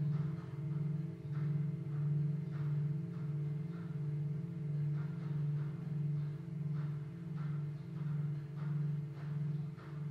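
A set of seven singing bowls, tuned C to B, left ringing on after being struck: a steady low hum with a few higher overtones above it. The tone wavers in a slow, even beat of about one and a half swells a second.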